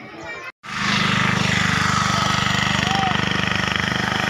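An engine running steadily close by, with a fast, even pulse and a low hum. It comes in loud after a brief silence about half a second in. A short chirp rises and falls about three seconds in.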